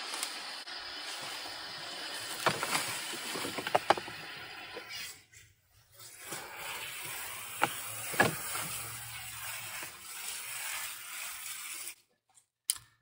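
Dry leaves, twigs and brittle hollow stalks rustling and crackling as they are handled and dropped into a plastic compost bin, with a few sharp snaps, broken by a short silent gap about halfway.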